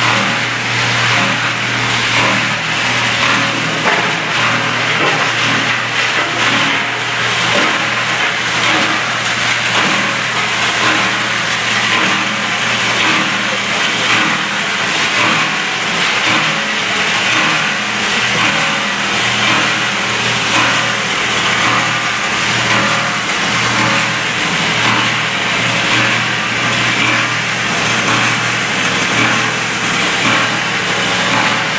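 Ramco 30 HP plastic granulator running, its three-blade rotor chopping white plastic pipe fed into the throat: a loud, steady machine sound with irregular crackle from the plastic being cut.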